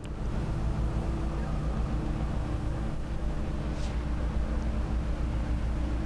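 A steady low mechanical rumble with a faint droning hum, which starts abruptly.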